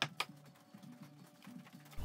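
Claw hammer knocking the waste out from between handsaw cuts in a pallet board: a few sharp knocks in the first moment, then faint background music.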